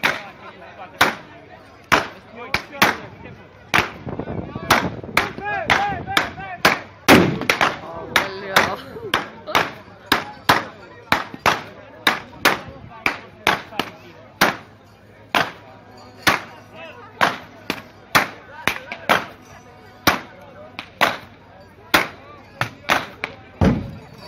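Long whips cracking over and over, about two sharp cracks a second, some coming in quick pairs, over the murmur of a crowd.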